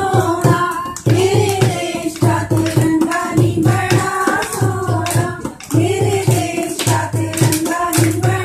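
A group of women singing a Punjabi Gidda boli together, with rhythmic hand clapping keeping a steady beat.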